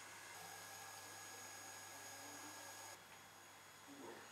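Near silence: a faint, steady hum and hiss of background noise that steps slightly quieter about three seconds in. No shot or other sudden sound.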